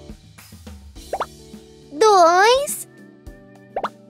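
Two short rising cartoon pop effects, one about a second in and one near the end, each marking a piranha being plucked off with tweezers. They sit over light children's background music, with a loud cartoon voice cry about halfway through.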